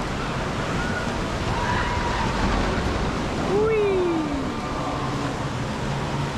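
Water rushing and churning through the rapids channel of a river rafting ride, a steady, even noise with faint voices in the background.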